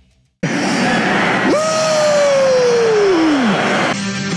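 After a brief silence, a loud rushing noise with a drawn-out yell over it, its pitch falling slowly over about two seconds.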